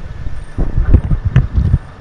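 Loud, irregular low rumbling and buffeting thumps on the camera microphone, with a couple of sharp clicks, from about half a second in.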